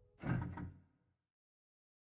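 A single heavy thud with a short ringing tail, then the sound cuts to dead silence.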